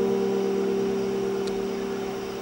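A held electric keyboard chord ringing on and slowly fading, several steady notes with no new attack.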